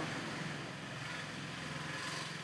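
Steady low hum over a faint hiss.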